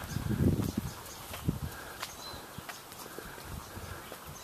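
Footsteps of someone walking on a paved path, irregular soft knocks, with handling rumble on a handheld camcorder's microphone in the first second.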